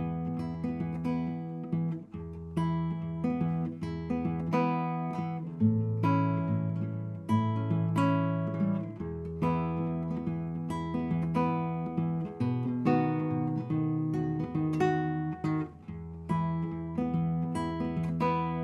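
Acoustic guitar fingerpicked through a 12-bar progression in E using the E, A and B7 chords. Plucked treble notes come in a steady stream over a ringing bass line that moves up to a higher note for a few bars about a third of the way in, and again later.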